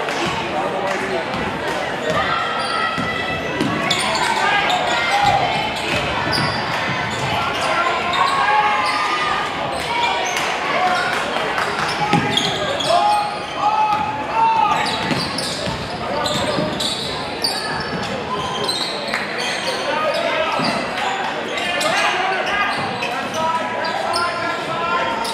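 Indistinct voices of spectators and players filling a large gym during a basketball game, with the ball dribbled and bouncing on the hardwood court.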